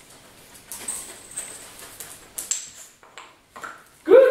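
Border collie's claws clicking and scraping on a tiled floor as it turns and trots, a handful of separate taps a fraction of a second apart.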